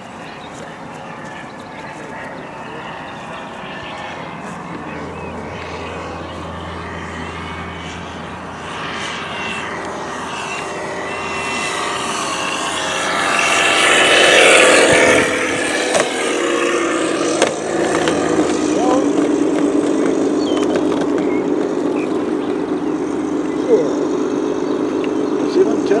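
Model P-51 Mustang's motor and propeller, growing steadily louder as the plane comes in low to land and loudest as it passes at touchdown. It then settles into a steady hum while the plane rolls along the grass, with a few short knocks.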